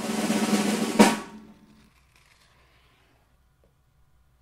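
Snare drum roll sound effect swelling in loudness and ending in a sharp final hit about a second in, which rings out briefly before fading away.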